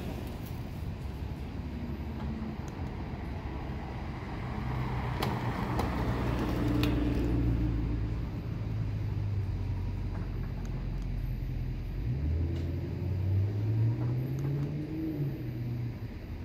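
A Cadillac Escalade SUV's engine running as it pulls away, louder in the middle. Its pitch rises near the end as it speeds up.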